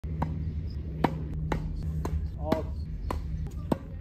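Tennis ball being hit with rackets and bouncing on a hard court during a rally: about seven sharp knocks, irregularly spaced roughly half a second apart, over a low steady hum.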